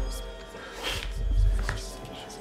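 Horror film score: sustained droning tones over a low throb that comes about every second and a half. About a second in there is a short, sudden noisy sound effect.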